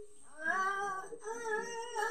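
A cartoon character's high voice in long, drawn-out vocal sounds, starting about half a second in, played from a TV's speaker.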